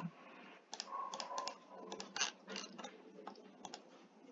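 Quiet, irregular clicking of a computer keyboard and mouse, about a dozen taps spread unevenly from about a second in until just before the end.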